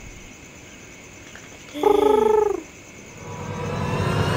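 A cartoon fledgling's short voiced cry, under a second long, about two seconds in, its pitch falling away at the end, as it drops from its perch. Near the end a rising swell of sound begins to build.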